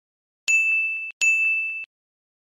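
Two bright electronic dings from an end-screen subscribe animation's sound effect. Each rings steadily for about half a second, the second following close on the first.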